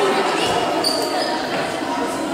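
Echoing sports-hall sound of a youth futsal game on a wooden floor: voices of players and onlookers calling out, with a few short, high squeaks about a second in.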